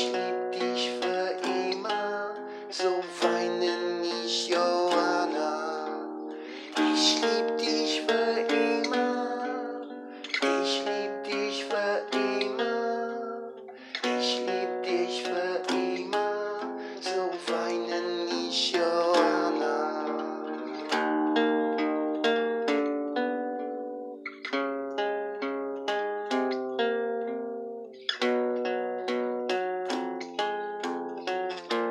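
Acoustic guitar played solo, chords strummed and picked without singing; after about twenty seconds the notes are plucked more singly and sparsely.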